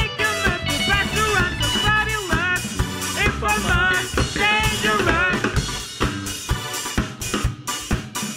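Live rock band playing: drum kit with snare and kick driving a steady beat under electric guitar, bass and keyboard. A sung melodic line runs over roughly the first five seconds, after which the drums and instruments carry on alone.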